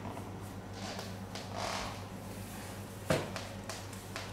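Fabric speaker grille being pulled off a JBL E60 tower speaker: quiet handling and rustling, with one sharp click about three seconds in.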